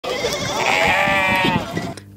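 A flock of sheep and goats bleating: one long bleat of about a second in the middle, with other bleats around it.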